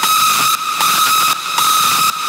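Hardstyle track in a breakdown with the bass and kick drum cut: a single held high synth note over a hiss that drops out briefly about every three quarters of a second.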